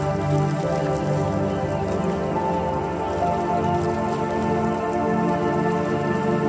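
Calm ambient meditation music of held chords that shift slowly every second or two, layered with a light patter of rain.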